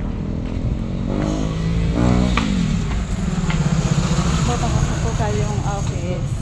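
A motor vehicle engine passing close, its pitch rising and then falling between one and two and a half seconds in. After that an engine runs steadily, with voices in the background.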